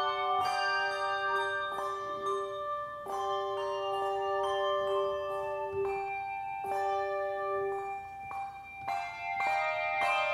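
A handbell choir ringing a piece: chords of several bells struck together, new notes coming every half second to a second, each ringing on and overlapping the next.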